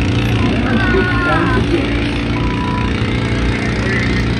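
A steady low engine hum running unchanged, with snatches of people's voices talking.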